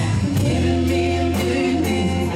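Live band music: electric guitars, bass guitar and a drum kit keeping a steady beat of about two hits a second, under a woman singing held notes.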